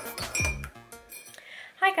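A metal teaspoon stirring tea in a ceramic mug, clinking against the side several times. Background music fades out in the first half-second, and a woman starts speaking near the end.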